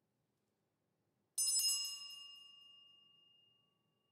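Small brass handbell struck once, with a bright clear ring that fades away over about two seconds.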